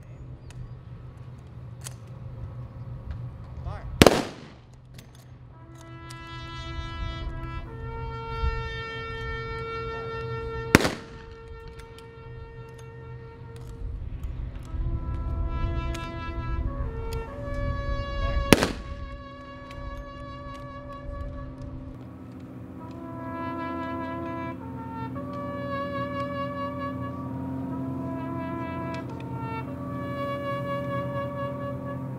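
Three rifle volleys from an honor guard's rifle salute, sharp cracks about seven seconds apart, the loudest sounds here. Over and between them a brass bugle call plays long, slow sustained notes, starting about six seconds in and carrying on to the end.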